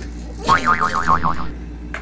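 A cartoon "boing" sound effect: a springy tone wobbling quickly up and down in pitch, starting about half a second in and lasting under a second.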